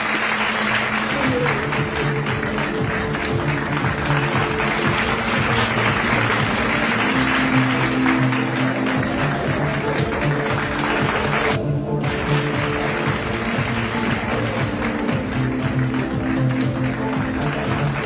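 Audience applauding steadily over music with long held notes. The clapping drops out for a moment about twelve seconds in.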